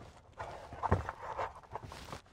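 Faint rustling and a few light knocks as an EV charging adapter is handled inside its foam-lined, zippered hard-shell carrying case.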